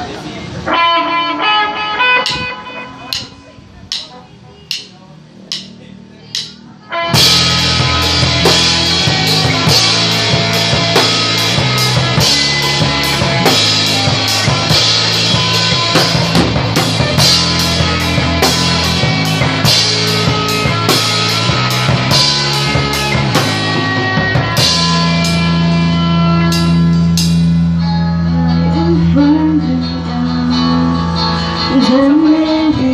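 Rock band playing live in a rehearsal room: a few guitar notes and evenly spaced sharp taps, then about seven seconds in the drum kit, electric guitars and bass come in together, loud, with cymbal crashes. Near the end the playing shifts to held chords over a sustained low bass note.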